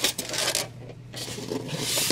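Styrofoam packing insert rubbing and scraping against the box as it is pulled out, with a knock at the start and the rubbing building again near the end.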